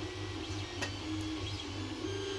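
A 3D printer running: its stepper motors whine at a pitch that steps every half second or so, over a steady low hum.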